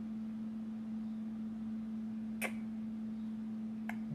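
A steady low hum, with one sharp click about two and a half seconds in and a fainter click near the end, as a small rubber drumstick grip is handled close to the microphone.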